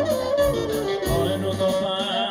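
Live Greek folk (dimotika) band playing a dance tune: an ornamented, sliding lead melody over a steady, pulsing bass beat.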